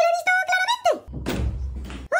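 High-pitched voice calls, then about halfway through a heavy thump and rumble of a wooden, glass-paned door being worked by its handle, lasting about a second before it cuts off.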